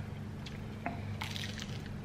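Faint wet, squishy sounds of sauce-coated Chinese food being handled and bitten, with a few short sharp clicks about a second in.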